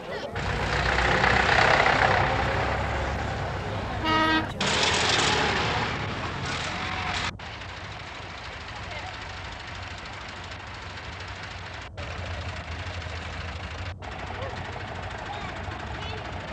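Passing convoy of tractors and lorries running, with a single short vehicle horn toot about four seconds in. The sound cuts abruptly three times, and after the first cut a steadier, quieter engine hum carries on.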